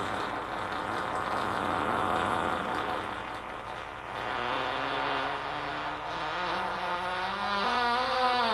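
Experimental electronic music: a dense, rushing noise texture, joined about halfway by held tones, with wavering, gliding pitches near the end.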